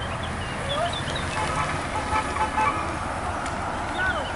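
Roadside sound of a cycle race passing: a steady rushing noise with short bird chirps early on, and a louder pitched sound in the middle that rises and falls for about a second.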